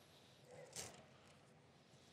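Near silence: room tone, with one faint, short sound about half a second in.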